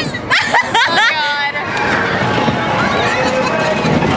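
Young women laughing and squealing on an amusement ride for about the first second and a half, then a steady mix of voices and ride noise.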